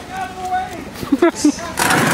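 Voices laughing and a yelped "Ow" of pain, with a few sharp loud hits in the middle and a loud rushing burst of noise starting near the end.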